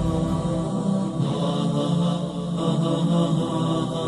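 A single voice chanting Quranic verses in the melodic recitation style (tilawat), holding long drawn-out notes that slowly bend in pitch.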